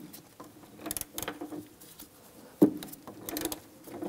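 Ratchet loosening a fuel-tank strap bolt: two short runs of rapid pawl clicks, about a second in and again near the end, with a single sharp knock between them that is the loudest sound.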